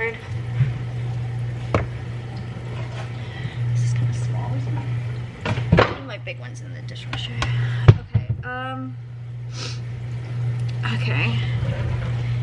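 A plastic cutting board set down on a granite countertop with a sharp clack about eight seconds in, among a few smaller knocks of kitchen handling, over a steady low hum.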